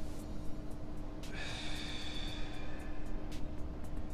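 A person's long exhale through the mouth, starting about a second in and lasting about two seconds, breathed out during the torso rotation of a hip-mobility drill.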